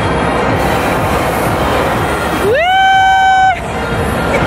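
Loud, steady din of a busy indoor amusement-park ride with music in the mix. Past the middle, a high-pitched call or tone rises, holds one pitch for about a second, then cuts off suddenly; it is the loudest sound here.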